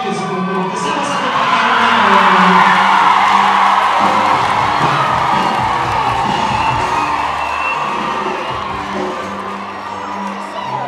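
A large audience cheering and shouting, swelling about two seconds in and easing off toward the end, with music playing underneath.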